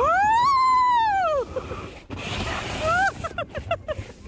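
A rider's long, loud whoop of excitement as the slide begins, its pitch rising and then falling, followed about three seconds in by a quick string of short, high shouts.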